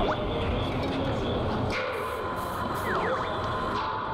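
Steady background noise of a busy set, with faint, indistinct voices and faint music underneath.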